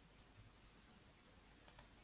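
Near silence, with two faint computer clicks close together near the end.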